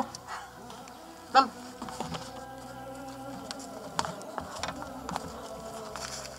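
A faint steady buzzing like a flying insect, under scattered short clicks and scuffs of people moving. A single shouted word comes about a second in.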